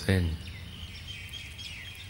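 A man's voice finishes a word, then faint high-pitched bird chirps over a low background hiss.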